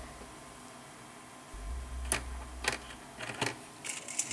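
A few light clicks and taps from about halfway through to near the end: small electronic components being handled and sorted in a metal parts tray, over a low hum that comes and goes.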